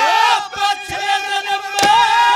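Male folk singer belting a long, wavering held note of a Haryanvi ragni through a stage microphone, over steady accompanying instrumental tones. A sharp percussive stroke lands near the end.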